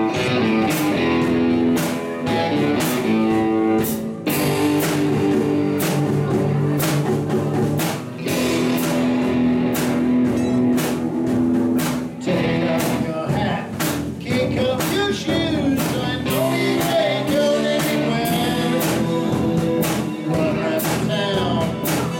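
A live rock band playing: electric and acoustic guitars over a drum kit beat, with a man's voice singing, most clearly from about halfway through.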